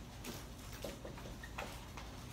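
Marker writing on a whiteboard: a run of short, irregularly spaced strokes and taps as the letters are written.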